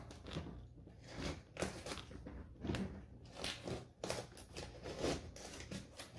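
Hand snips cutting through a flexible aluminum foil dryer vent duct with a harder reinforcing material in it: a string of short, irregular cuts.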